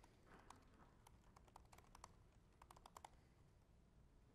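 Faint typing on a computer keyboard: a quick, irregular run of keystroke clicks that stops a little after three seconds in.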